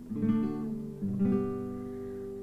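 Classical guitar strumming chords, two about a second apart, each left to ring and fade: the accompaniment carrying on between sung lines of the hymn.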